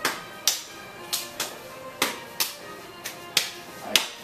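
A wooden stick and bare forearms clashing in a cimande stick drill: sharp, hard strikes, about ten in four seconds, often coming in quick pairs.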